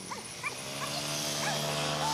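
A young pitbull whimpering in short, high whines, over a steady low hum that swells from about half a second in.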